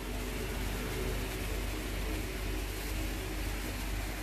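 A steady low machine hum with hiss, unchanging throughout.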